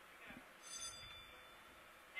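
Near silence: faint steady hiss of the live feed, with a brief faint trace of voice.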